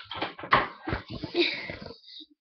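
Handling noise close to the microphone: a quick, irregular run of knocks and rustles as objects are moved about.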